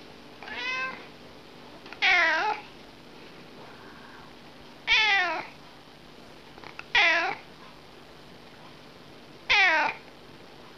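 Domestic cat meowing: five short calls about two to three seconds apart, each falling in pitch, the first fainter than the rest.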